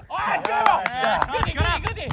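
Several players shouting and calling out at once over each other, with a few sharp thuds of a football being kicked on artificial turf.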